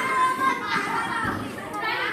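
A group of children talking, shouting and laughing over one another as they play a game.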